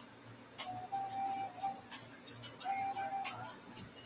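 A man softly whistling a slow tune: a few long held notes with small steps in pitch.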